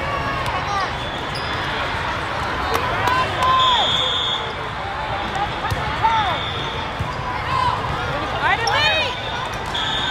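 Busy volleyball hall: many voices of players and spectators, sneakers squeaking on the court floor, and a referee's whistle sounding briefly about three and a half seconds in and again at the end.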